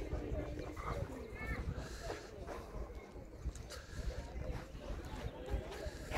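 Distant voices of players calling out on an outdoor football pitch, over a low rumble and a few faint knocks.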